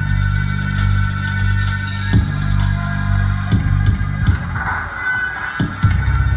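Slow dance music with a deep sustained drone and a few heavy, widely spaced drum hits, about five in all; the drone thins out briefly near the end.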